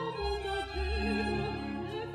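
A classical soprano singing a sustained line with steady vibrato, accompanied by a chamber string orchestra with violins and cellos holding notes underneath.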